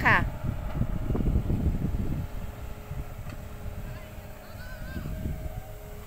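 Wind buffeting the microphone for the first two seconds or so, then easing to a quieter open-air background with a faint steady hum.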